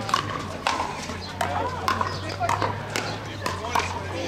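Pickleball paddles hitting hard plastic balls, giving sharp hollow pops at irregular intervals from several games at once. Players' voices carry across the courts between the hits.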